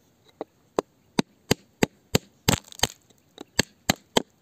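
A pointed hand tool striking and chipping at rock and crumbly soil: a run of sharp, irregular taps, about three a second, with a rougher scraping cluster about two and a half seconds in.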